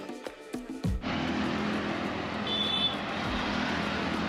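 Road traffic on a city street: cars and motorcycles passing, a steady noise that sets in sharply about a second in, with a short high-pitched tone a little past the middle.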